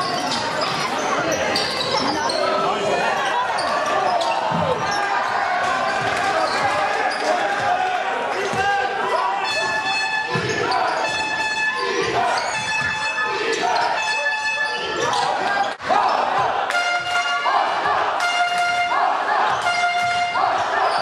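Basketball game in an indoor arena: a ball bouncing on the court under a steady din of crowd and player voices, with short high-pitched squeaks coming in bursts in the second half.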